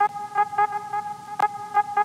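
Typewriter-style key clicks sound as the title text types out on screen, coming unevenly at about four to five a second with one sharper click partway through, over a steady held tone.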